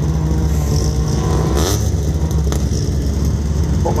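Race cars' engines running and revving out on a gravel track, over a steady low rumble, with a short burst of rushing noise about one and a half seconds in.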